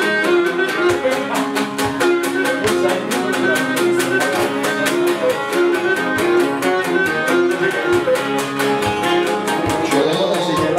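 Live Cretan syrtos dance tune: a Cretan lyra bowing the melody over mandolin and laouto plucking a quick, steady rhythm.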